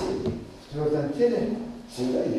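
A man lecturing in speech that continues through the pauses, with no other sound standing out.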